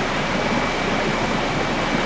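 Steady, even hiss with a faint steady high whine running through it.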